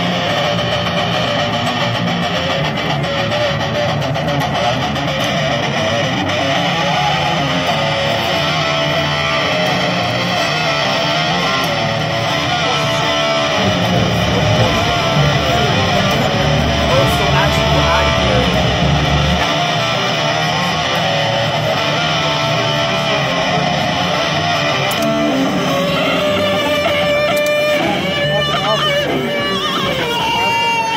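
Custom Jordan seven-string electric violin, bowed and played through a Kemper Profiler amp with a distorted, electric-guitar-like tone: loud, continuous metal playing. Near the end it moves to held notes that slide in pitch.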